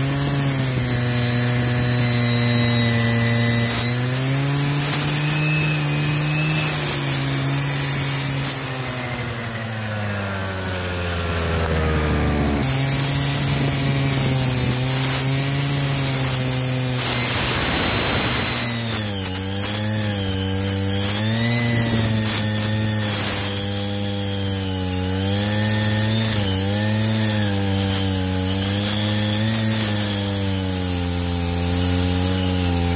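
Maruyama NE500 two-stroke brushcutter with a 10-inch, 40-tooth circular blade cutting into a log: the engine runs at high revs, its pitch sagging and wavering as the blade loads up in the wood. Before halfway the revs fall away steadily, and a little after halfway there is a short rasp of the teeth biting.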